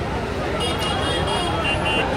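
Crowd noise of a large street rally: many voices talking and calling at once. From about half a second in, a high tone sounds in short repeated pulses over the crowd.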